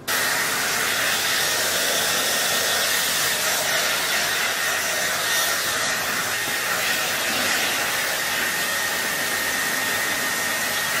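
Handheld hair dryer blowing steadily on a client's hair, a strong even rush of air with a faint high whine running through it. It starts abruptly.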